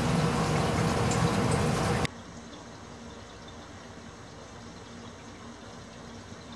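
Steady water noise from a running aquarium filter, with a faint hum under it; about two seconds in it drops abruptly to a much quieter steady hiss and hum.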